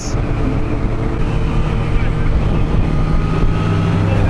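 Motorcycle engines running at a steady cruise under wind noise on a helmet-mounted microphone. Near the end a Kawasaki Z1000's inline-four grows louder as it draws alongside.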